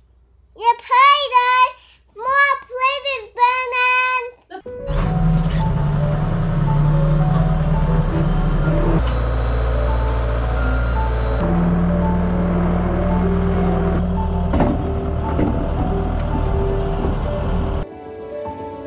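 A small child singing in short phrases for the first few seconds, then a Bobcat skid steer's engine running steadily, its note shifting twice in the middle, with background music playing over it.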